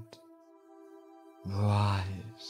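Soft ambient meditation music with a steady held tone. About a second and a half in, a low, deep voice comes in, held at one pitch like an intoned mantra.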